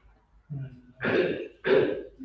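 A person coughing twice in quick succession, the coughs about half a second apart after a short throaty sound.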